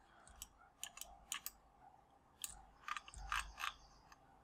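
Faint, irregular clicking from a computer mouse and keyboard, a dozen or so light clicks scattered through the few seconds.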